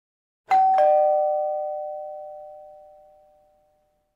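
Two-note ding-dong doorbell chime: a higher note, then a lower note about a quarter second later. Both ring on and fade out over about three seconds.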